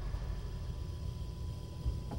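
Car engine idling with the hood open, a low steady rumble under a faint hiss.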